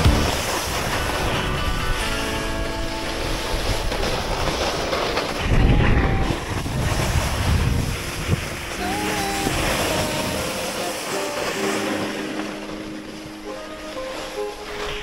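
Rushing noise of wind on the microphone and a snowboard sliding and scraping over packed snow at speed, swelling louder about six seconds in, with music playing over it.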